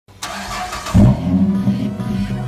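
A 5.7-litre Hemi V8 starting up: a brief whirr of cranking, then the engine fires with a loud surge about a second in and runs at a fast idle.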